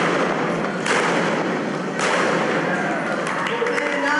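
Noisy indoor arena recording: a constant wash of hall and crowd noise, broken by sharp bangs about a second in and at about two seconds. Raised crowd voices come in near the end.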